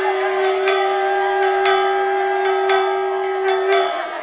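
A metal bell struck about once a second, each strike ringing on, over one long held wind note that breaks off just before the end: ritual bell and wind sounds accompanying a puja.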